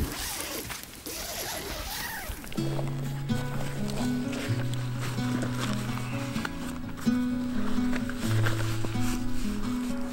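Background music; a slow line of held low notes comes in about two and a half seconds in.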